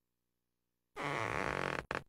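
Cartoon sound effect from the screensaver as the character's cheeks puff up: a wavering, pitched sound of just under a second starting about a second in, then a short second blip at the end.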